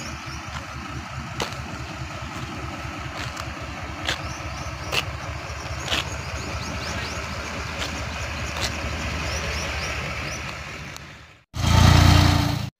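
An engine idling steadily, with a fast low pulsing and a few light clicks and faint high chirps over it. Near the end the sound drops out briefly, then comes back much louder for about a second.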